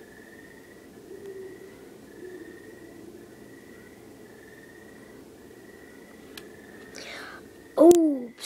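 Feeder crickets chirping faintly in a repeated pattern, about one short chirp a second, over quiet room sound with soft, indistinct voices in the background. A sudden loud rustle of handling noise comes right at the end.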